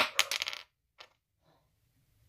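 Small hard plastic pieces clattering on a tabletop: a quick rattle of clicks lasting about half a second, then a single click about a second in.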